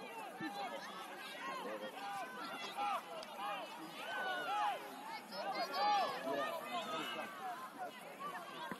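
Many overlapping voices talking and calling out at once, with no single speaker standing out; a little louder about six seconds in.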